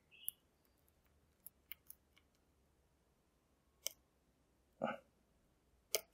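Faint, scattered clicks of a lock pick working the pins of a five-pin cylinder lock under tension, about half a dozen separate ticks, with a slightly sharper click near the end as the lock gives.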